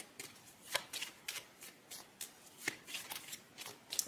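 Tarot cards being shuffled and handled by hand: faint, irregular clicks and flicks of card stock.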